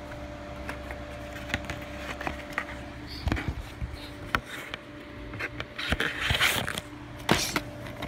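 Handling noise: scattered clicks and knocks of plastic DVD cases being handled, and rustling as the camera brushes against clothing, loudest about six seconds in. A steady low hum runs underneath.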